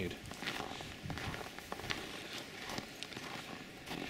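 Footsteps on packed snow: a person walking, each step a short irregular crunch.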